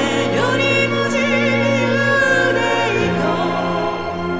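Live orchestral pop ballad: a female singer and a mixed choir singing with vibrato over sustained orchestral chords from a symphony orchestra.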